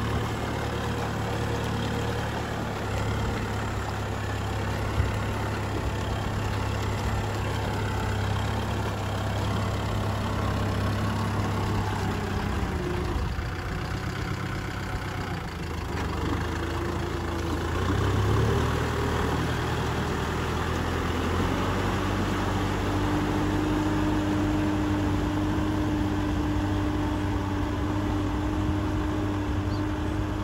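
Kubota M6040SU tractor's four-cylinder diesel engine running steadily under load as it pulls a disc plough through wet paddy mud. The sound swells briefly a little past the middle.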